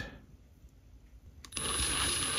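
A power drill starts about one and a half seconds in and runs steadily with a thin high whine. It is boring out an off-centre hole in a soft-metal model locomotive smokebox front.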